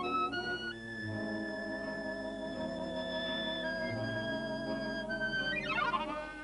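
Chromatic harmonica playing a melody over instrumental accompaniment: a few rising notes, then long held notes with a slight hand vibrato, and a quick run of notes near the end.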